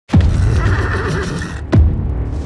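A horse whinnying with a wavering call that stops abruptly, laid over dramatic trailer music. A deep falling boom hits at the very start and another just before the end.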